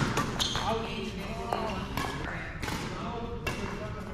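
Badminton rackets striking a shuttlecock in a rally, several sharp hits about a second apart, with voices in the background.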